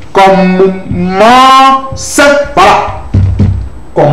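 A man's voice drawing words out slowly in a sing-song way, with one long held note about a second in that rises in pitch and then holds.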